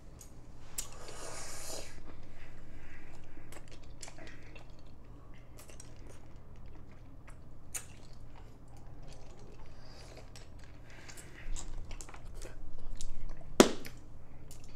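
Mouth sounds of people sucking and chewing Toxic Waste sour hard candy, with scattered small clicks and crunches. There is a noisy swell about a second in and a single sharp, loud click near the end.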